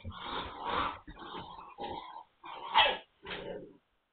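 Magyar Vizsla puppies, nine weeks old, making short dog sounds as they play, in several separate bursts. One sound about three seconds in falls in pitch.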